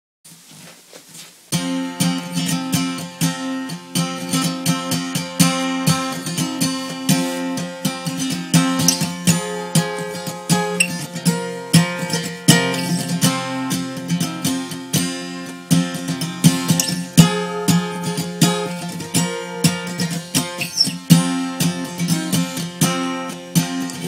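Acoustic guitar strummed in steady chords, starting about one and a half seconds in, recorded on a single phone microphone.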